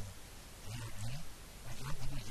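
A man's low voice speaking into a handheld microphone in short phrases with brief pauses: speech only.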